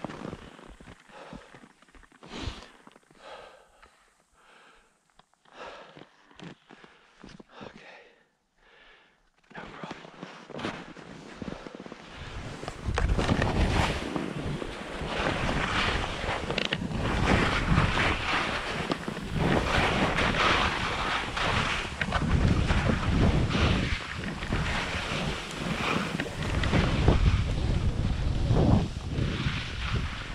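Skis sliding and scraping down a steep snow slope, with wind rushing over the microphone. It starts about ten seconds in after a quiet stretch of short faint sounds, builds, then runs loud and unbroken.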